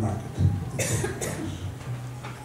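A person coughing: two quick coughs a little under a second in.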